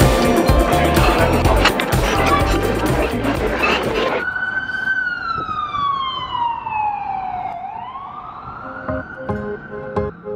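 Background music with a heavy beat cuts off about four seconds in. An emergency vehicle siren follows: one slow wail that falls and then rises again. Light plucked music comes in near the end.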